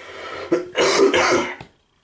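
A person coughing hard, a short cough about half a second in and then a longer, rasping bout of coughing and throat-clearing.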